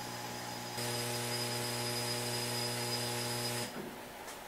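Steady electrical hum from running shop machinery. About a second in, a louder hum with a hiss joins it, and both cut off abruptly shortly before the end.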